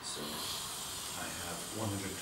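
Air hissing out through the release valve of a manual blood pressure cuff as it is deflated; the hiss starts suddenly and holds steady.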